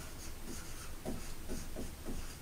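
Dry-erase marker writing on a whiteboard: a series of short strokes as letters are drawn.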